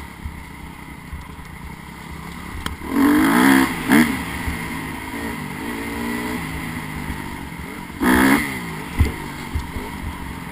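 Dirt bike engine running along a trail, revved hard twice, about three seconds in and again about eight seconds in, with lower-throttle running between.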